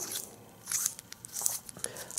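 Small metal clicks and faint scraping of a tiny threaded brass-and-steel peanut lighter's cap being twisted on its threads by hand, in two short clusters.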